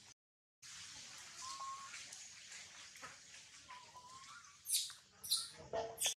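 Long-tailed macaques squealing: a couple of faint short squeaks, then three loud, shrill squeals in quick succession near the end. There is a brief gap of silence just after the start.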